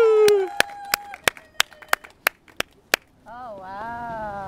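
Rhythmic hand clapping, about three sharp claps a second, stopping just before the three-second mark. A long held sung note fades out about half a second in, and a voice starts up near the end.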